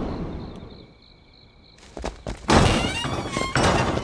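Action sound effects: a rush of noise fading out, then a quiet stretch with a faint high ringing. Just before two seconds in comes a sudden thud, and from about halfway a loud, dense clatter of impacts and movement as attackers burst in.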